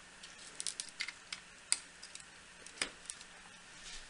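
Faint, scattered plastic clicks and ticks as a green pluggable screw-terminal power connector is pushed into its header on a RAMPS 1.4 board. The sharpest clicks come a little under two seconds in and again near three seconds.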